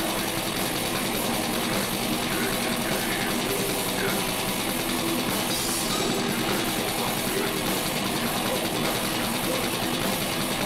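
Heavy metal band playing loud and dense: fast, relentless drumming on a full kit under distorted guitars, with a harsh vocal over the top.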